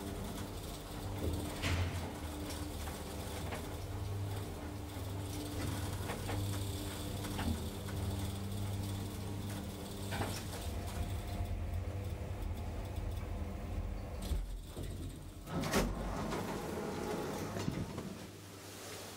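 1987 Valmet-OTIS hydraulic elevator running up between floors, heard from inside the car: a steady low hum from its hydraulic drive with a few small clicks. About fifteen seconds in, a louder stretch of noise that fits the car doors sliding open at the landing.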